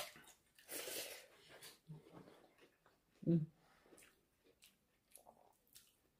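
Close-up eating sounds: chewing and lip smacks of a mouthful of rice and curry eaten by hand, with a short hummed vocal sound about three seconds in.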